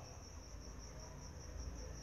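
A faint, steady high-pitched trill over a low hum.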